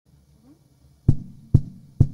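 Steady low knocks counting in a tune: two thuds about half a second apart starting about a second in, with a third right at the end.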